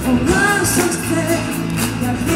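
Live worship band playing with a lead singer, sung melody over guitars and steady drum beats, heard through the stage loudspeakers from the crowd.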